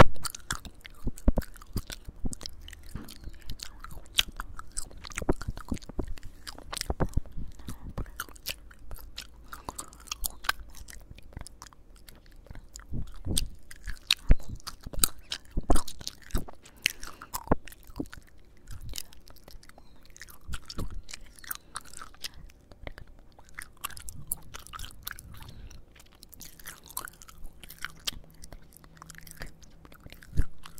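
Chewing gum right at a microphone: wet, sticky smacks and sharp mouth clicks in an irregular stream.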